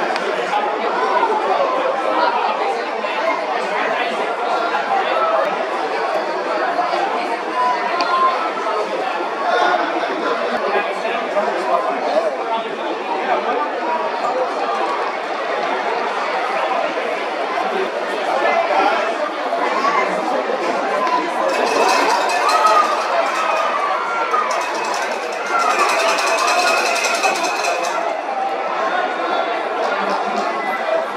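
Ballpark crowd chatter: many voices talking at once, at a steady level, with two short louder stretches of hissy noise in the second half.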